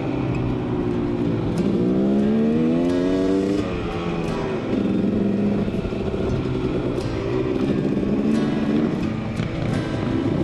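Dirt bike engine pulling hard, its pitch climbing and dropping as it shifts up through the gears in the first few seconds, then running steadier at speed, heard from the rider's own helmet camera over background music.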